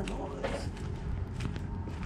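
A man's footsteps on a concrete pool deck, a few separate steps, with a short murmured voice at the start, over a steady low background rumble.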